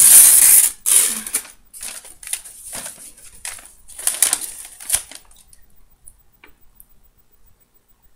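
A sheet of paper torn and crumpled close to the microphone: a loud burst in the first second, then a string of shorter crinkles and rustles that die away about five seconds in.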